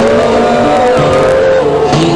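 Live band dance music played loud, carried by a long held melody note that steps down about halfway through.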